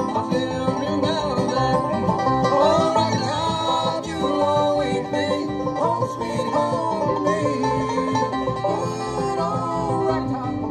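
Live bluegrass band playing, with banjo and acoustic guitar among the strings, at a steady, full level.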